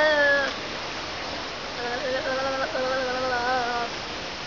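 Drawn-out, wavering cries of steady pitch: the first trails off and stops about half a second in, and a second one starts about two seconds in and runs until just before the end.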